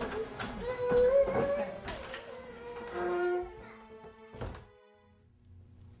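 Background film music with held notes, under faint voices, followed by a single sharp thunk about four and a half seconds in, then quiet room tone.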